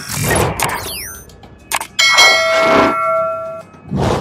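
Subscribe-button animation sound effects: a swish, a short gliding sweep and a click, then about two seconds in a bright bell-like ding that rings for about a second and a half.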